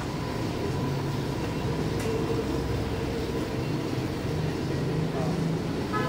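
Steady low background rumble with faint voices, and a single sharp click about two seconds in.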